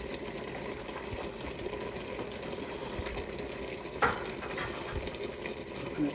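Fish paksiw simmering in an uncovered stockpot, a steady bubbling crackle. A single sharper knock about four seconds in.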